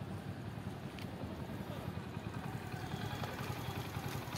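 Steady low rumble of road traffic, with vehicle engines running in the background. There is a faint click about a second in.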